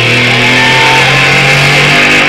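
Live rock music: an electric guitar holds a sustained low note, with a short higher gliding line about half a second in, over a steady wash of cymbals and stage noise.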